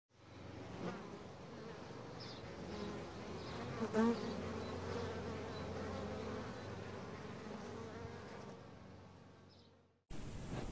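Honeybees buzzing en masse: a steady hum that fades in at the start, rises briefly about four seconds in, and fades out shortly before the end.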